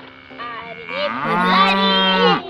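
A cow mooing: one long call that starts about a second in, rises slightly in pitch and falls away at the end.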